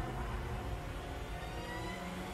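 Background soundtrack of an animated fight video: a low steady rumble under faint thin tones that slowly rise in pitch.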